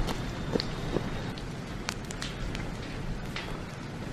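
Burning bush with a steady rushing noise and scattered sharp crackles and snaps, mixed with running footsteps through the burnt undergrowth.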